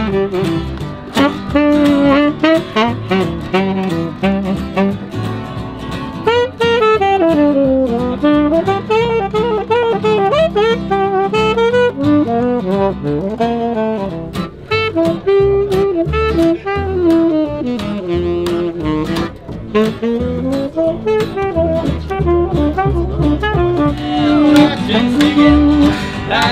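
Live jazz trio playing: a saxophone carries the melody over an acoustic guitar and a plucked upright double bass.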